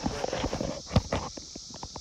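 A few dull thumps and rustling from handling a large blue catfish as it is carried down through bankside plants toward the water, the loudest thump about a second in.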